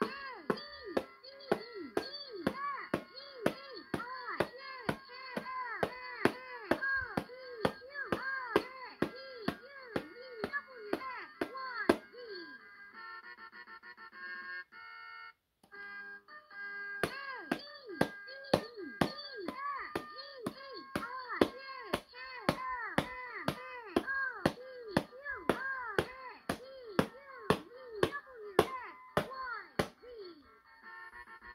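Electronic drum sounds and music from a 2001 LeapFrog Learning Drum toy's small speaker as its pad is hit over and over: quick tones that fall in pitch over a steady beat of about two clicks a second. In the middle, a short stretch of plain electronic melody notes takes over for a few seconds.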